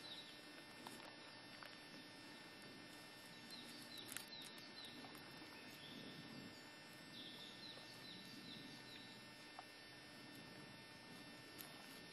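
Near silence: faint outdoor quiet with a few faint, short, high chirps from distant birds in small groups, and a few tiny clicks.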